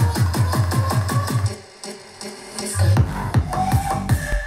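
Electronic music with a fast kick-drum beat played through Edifier R1600T Plus two-way bookshelf speakers alone, the subwoofer switched off, so the deepest bass is missing. The beat drops out briefly about a second and a half in and comes back near three seconds.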